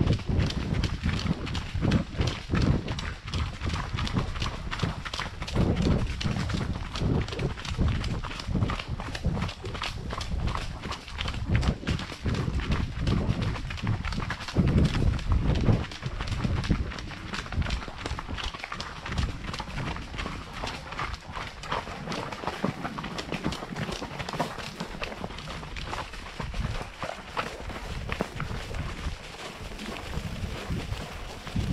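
Horse hooves striking a dirt and gravel trail, a steady run of hoofbeats from the ridden horse and the horse just ahead.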